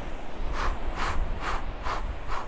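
A man's short, sharp breaths, puffed out rhythmically about twice a second, the breathing that paces the Pilates hundred, over a low steady rumble.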